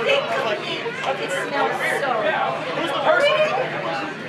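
People's voices talking, several overlapping as chatter.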